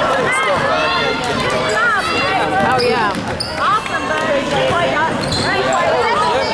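Basketball game on a hardwood gym floor: many short, sharp squeaks of sneakers as players run and cut, with the ball bouncing, over spectators' chatter.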